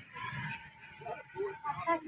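Faint, indistinct voices of people talking, with a thin steady high tone running through most of it.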